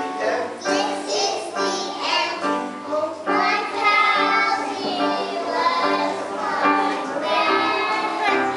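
A group of kindergarten-age children singing a song together.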